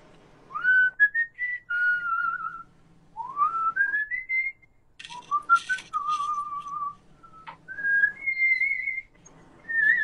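A person whistling a tune in four or five phrases, many notes swooping up into a held note, with short gaps between phrases. A brief breathy hiss comes about five seconds in.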